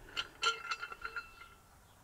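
Metal canopy mounting bracket and strut clinking together as they are handled: several light metallic clicks in the first second or so, each with a short ring, then fading out.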